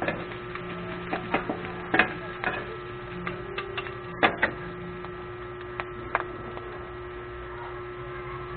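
Two metal spatulas clanking and scraping on a flat steel griddle as diced pork sisig is tossed and chopped: irregular sharp strikes, frequent for the first few seconds and sparse after about six seconds, over a steady hum.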